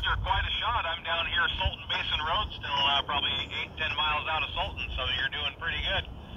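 A distant amateur radio station's voice replying over the air through the transceiver's speaker: thin, narrow-band radio speech with the top cut off sharply, over a steady low rumble.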